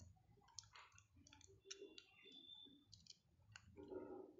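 Near silence with faint, irregular clicks over a low hum.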